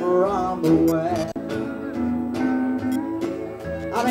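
Live country band music: guitars and bass playing a steady instrumental passage.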